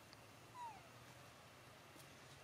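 A single short, falling squeak-like call from a young macaque about half a second in, otherwise near silence.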